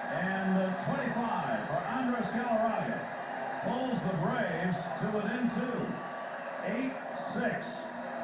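A man speaking: broadcast commentary played through a television's speaker.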